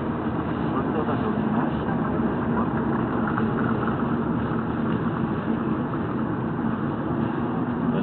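Steady road and engine noise of a car being driven, heard from inside the cabin.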